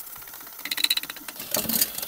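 Cordless drill spinning a chimney sweep's brush inside a stove flue, a rapid mechanical rattle that sets in about half a second in and grows denser near the end.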